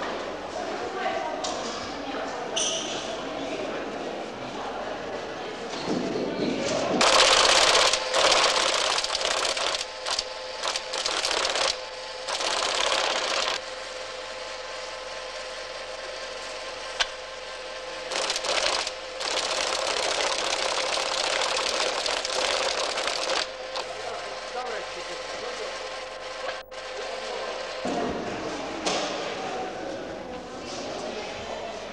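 Mail-sorting-room machinery running with a rapid mechanical clatter over a steady hum. The clatter grows much louder in two long stretches in the middle, with indistinct voices in the background.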